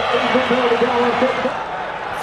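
A man's voice over the steady noise of a stadium crowd at a rugby match.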